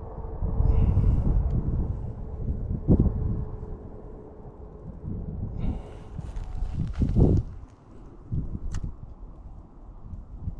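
Wind buffeting the microphone in a low rumble, with rustling and two sharp handling knocks, about three seconds in and again about seven seconds in.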